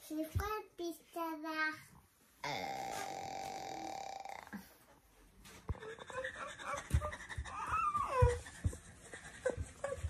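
A young child and a woman making playful vocal sounds on a bed: short voiced noises, then a drawn-out buzzing vocal noise lasting about two seconds, then soft bumps and handling knocks with a few rising and falling squeals.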